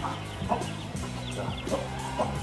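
Domestic fowl clucking in a few short calls over a steady low drone.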